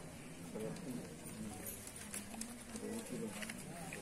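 Faint background voices of several people talking at once, with a few light clicks.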